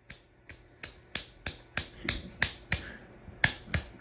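Hunter 44-inch ceiling fan spinning with a regular ticking, about three sharp clicks a second.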